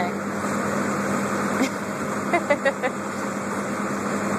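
Steady mechanical drone with a low hum from the airport cargo-loading machinery, with a few brief squeaks or voices about two and a half seconds in.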